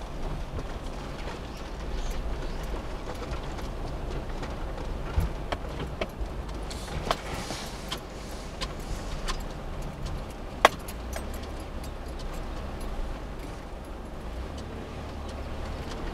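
Inside a Suzuki Every kei van driving slowly: a steady low rumble of engine and tyres, with scattered sharp clicks in the middle stretch, the loudest about ten and a half seconds in.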